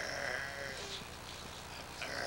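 A person's voice: one drawn-out, wavering vocal sound in about the first second, bleat-like rather than spoken words, fading after.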